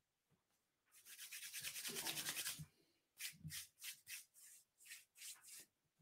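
Faint rubbing noise for about a second and a half, then a string of short soft scuffs about every half second.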